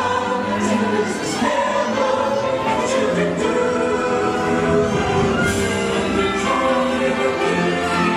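Christmas parade soundtrack music: voices singing together over orchestral backing, playing steadily.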